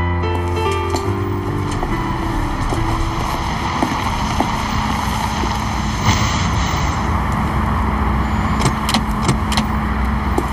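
Soft piano music trailing off over the first two seconds, then a steady car engine running amid street traffic noise, with a few light clicks near the end.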